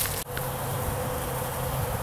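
Honeybees buzzing as a steady hum, many of them crowding a feeder loaded with dry pollen substitute, after a brief click at the very start.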